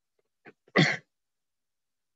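A man coughs once, short and sharp, just under a second in, with a faint small sound just before it.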